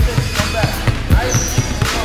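Several basketballs dribbled hard on a hardwood gym floor: many bounces at irregular intervals, the pound-dribble drill of a group of players.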